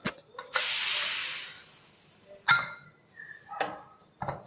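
Pressure cooker releasing its remaining steam as the whistle weight is lifted off the vent: a light click, then a sudden loud hiss that fades away over about two seconds, letting off the last of the pressure so the lid can be opened. A few sharp metal clinks follow.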